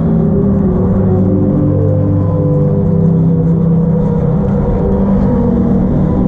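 An indoor percussion ensemble's front ensemble holding low sustained chords, synthesizer-like, that shift slowly from one chord to the next, with no drum strokes standing out.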